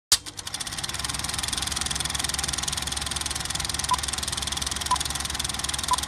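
Film projector sound effect: a click as it starts, then the mechanism's steady, rapid clatter, with three short beeps a second apart in the second half.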